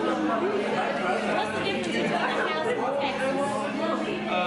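Several people talking at once over each other: indistinct, overlapping table chatter in a large, reverberant room.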